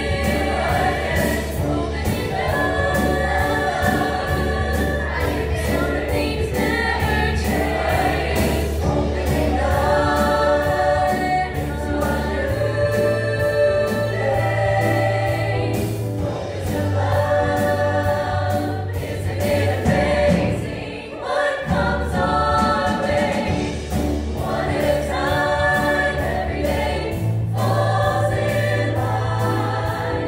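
Mixed high school choir singing in parts with piano accompaniment, over a steady low bass line that drops out briefly about two-thirds of the way through.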